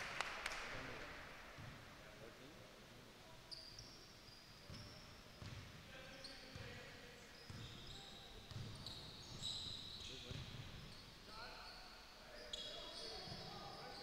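A basketball being dribbled on a hardwood gym floor, with faint thuds roughly once a second and short high sneaker squeaks, in an echoing gym. Players' voices call out faintly in the background.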